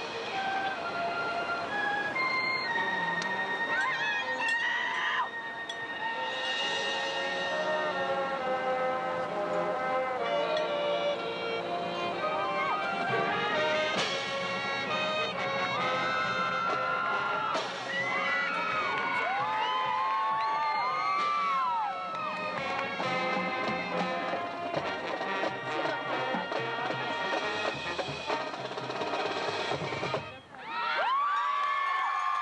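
High school marching band playing a field show: brass holding and moving through chords over drums, with a sharp accented hit about fourteen seconds in and bending, gliding brass notes after it.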